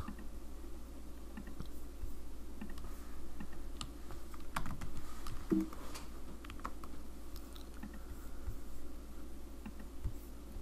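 Computer keyboard typing: scattered light key clicks, irregular and fairly quiet, over a faint steady low hum.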